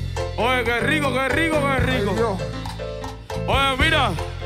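Live band music: a man sings a sliding, melismatic vocal line into a microphone over a steady bass.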